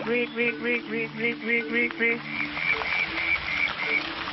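A man imitating a frog's call with his voice: a rapid run of short pitched croaks, about four a second, that turns into a series of longer, higher notes in the second half.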